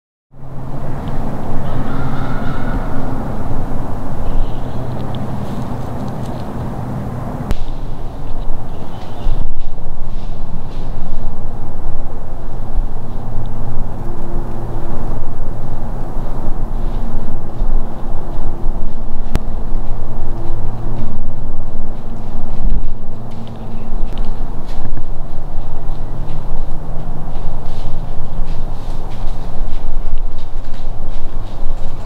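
Handling noise from a bow-mounted camera shaking in a trembling hunter's hands: rubbing and small knocks loud on its microphone, over a steady low hum. It grows louder about seven seconds in.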